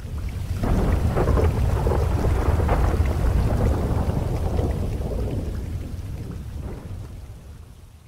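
Rolling thunder with rain. The deep rumble swells in over the first second, holds for several seconds, then slowly dies away toward the end.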